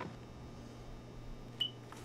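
Quiet room tone with a low steady hum, broken by one short high-pitched blip about one and a half seconds in.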